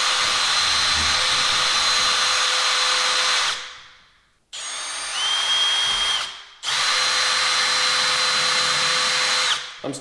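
Cordless drill spinning a small router-style bit, routing out a shallow mortise in the edge of a door. It runs at a steady whine, winds down about a third of the way in, runs briefly at a lower speed, then runs at full speed again and winds down near the end.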